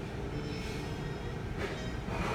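Steady low rumble of a moving vehicle, with a faint high-pitched squeal from about half a second in and a brief hiss near the end.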